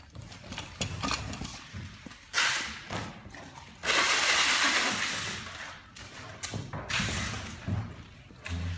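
Packing tape being pulled off its roll in noisy strips: a short pull about two and a half seconds in, a longer one of about two seconds around the four-second mark, and another shortly before the end, with a few clicks and knocks between.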